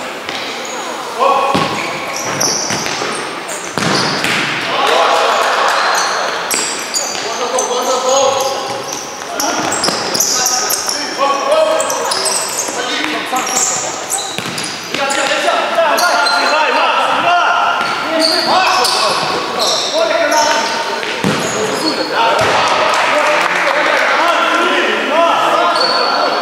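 Futsal match in an echoing sports hall: players calling out to each other, with the ball being kicked and bouncing on the court floor.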